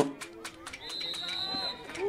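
A referee's whistle blown once, a single steady high note lasting about a second, signalling the play dead after a tackle. Distant voices of players call out around it.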